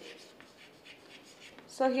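Chalk writing on a chalkboard: a run of faint, short scratching strokes as a word is written, and a woman's voice starts near the end.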